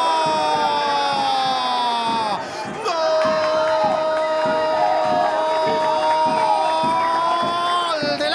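Football commentator's long drawn-out goal call for a converted penalty, held in two long breaths with a short break about two and a half seconds in, over crowd cheering and a low beat about twice a second.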